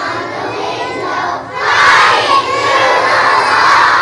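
A class of young children's voices together, swelling about a second and a half in into a loud group shout.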